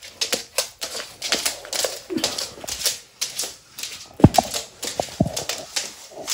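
Argus monitor's claws clicking and tapping on a hard wooden floor as it walks, several irregular clicks a second. There are a couple of heavier thumps about four to five seconds in.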